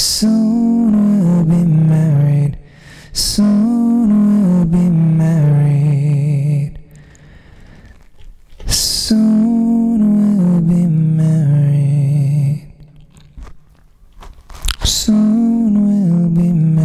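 A man singing long held phrases into a microphone through a vocal harmony pedal, the notes wavering with vibrato. There are three phrases with a quick breath before each new one, and a fourth phrase starts near the end.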